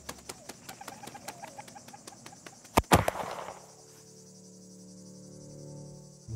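A shotgun fired once at a passing dove about three seconds in: a sharp, loud report with a brief echo after it, against faint ticking in the background.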